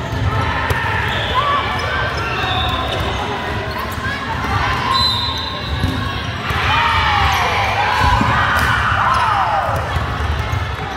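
A volleyball rally in a large echoing sports hall: the ball being struck and bouncing, with players and spectators calling out. The calls grow louder and busier over the last few seconds.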